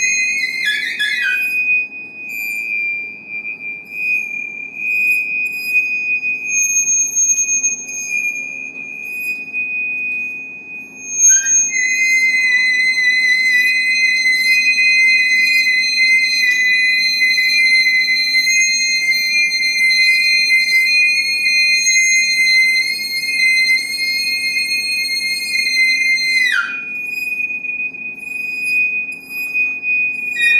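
Bowed metal percussion giving sustained, pure, whistling high tones: one held steadily throughout, and a second, slightly lower one that enters about a third of the way in, holds for about fifteen seconds and slides down as it stops.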